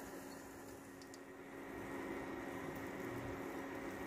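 Faint, steady sizzle of a zucchini-and-carrot egg-batter pancake frying in a pan, over a low steady hum.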